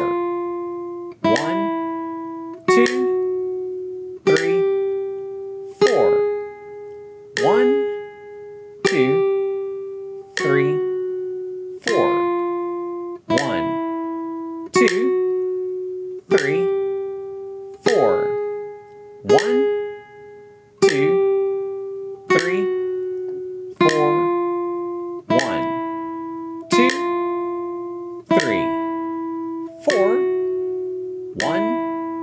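Classical nylon-string guitar playing a slow single-note sight-reading exercise at 40 beats per minute: one plucked note about every second and a half, each left to ring and fade. The notes step up and down by half steps, naturals and sharps, in first position.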